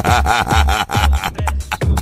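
Electronic dance music with a steady, fast kick-drum beat and repeated falling-pitch sound effects sweeping over it.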